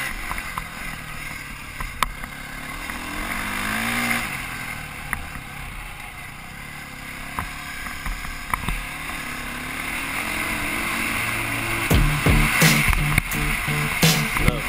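Honda CRF450R four-stroke single-cylinder dirt bike engine revving up and down while riding, picked up by a helmet-mounted camera. A music track with a heavy beat comes in near the end.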